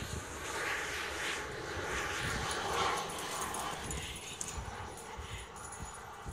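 A small dog whimpering in a string of short cries that fade out about four seconds in.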